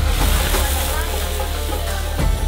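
Crêpe Suzette flambéed in a pan over a tableside burner: a steady hiss and sizzle as the liqueur catches and the flames go up, stopping near the end.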